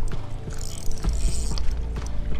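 Spinning reel being cranked against a heavy, snagged fish, its gears giving a steady run of small ticks, with wind rumbling on the microphone.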